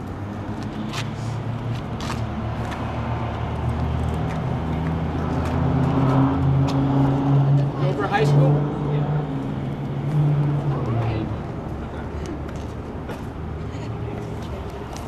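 A motor vehicle's engine running close by, a low steady hum that grows louder over several seconds, is loudest past the middle, and falls away about three seconds before the end. Short clicks are scattered through it.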